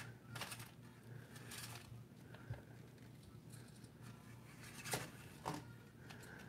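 Faint, scattered light clicks and scuffs from an ECX Barrage UV 1/24 micro crawler's tyres pushing and climbing against the tyre of a large monster truck.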